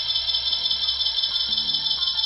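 Live rock band's song at a break: the full band has just stopped and a high sustained sound rings on with a fast wobble in loudness. A few quiet low notes come in near the end.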